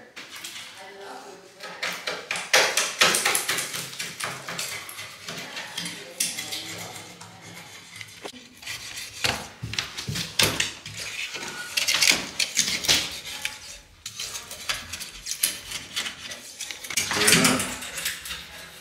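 Irregular scraping and small hard clinks of a hand tool against ceramic wall tiles as they are cleaned before grouting.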